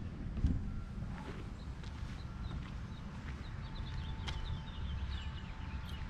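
Quiet outdoor background: a steady low rumble, with a few faint high chirps a little past the middle.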